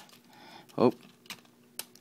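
Hard plastic parts of a Transformers Human Alliance Roadbuster figure clicking as they are handled and pressed together, a few separate sharp clicks, with a short spoken "oh" near the middle.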